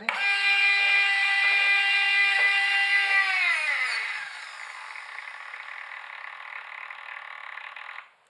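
Small electric servo motor whining steadily as it drives a lead screw that moves a counterweight along its tube. About three and a half seconds in, the whine falls in pitch and carries on as a quieter, rougher whir, then cuts off sharply at the end.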